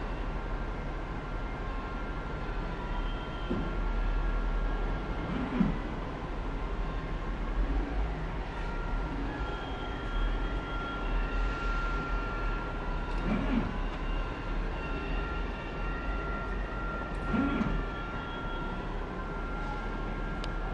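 Steady mechanical hum and hiss with a faint high, steady whine, broken four times by brief low sounds.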